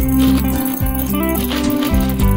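Tic Tac mints rattling out of their plastic box and clicking into a glass bowl, over steady background music.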